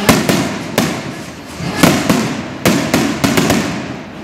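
Festival skyrockets (cohetes) exploding overhead: a string of about seven sharp bangs at uneven intervals. The loudest come right at the start, about two seconds in, and near three seconds.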